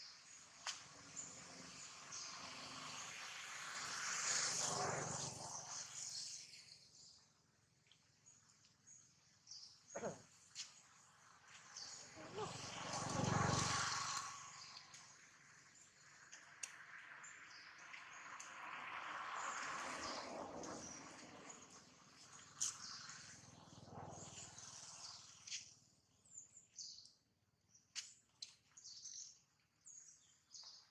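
Outdoor ambience with faint, scattered bird chirps. Three long swells of broad noise rise and fall: a few seconds in, near the middle, and about two-thirds through.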